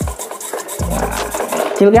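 Hands handling a mini 1:28-scale K969 RC car's plastic chassis, rubbing and clicking, over background music with a bass beat.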